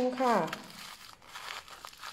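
Clear plastic wrap around a plant pot crinkling and crackling as scissors cut it open, in quiet irregular rustles after the first half-second.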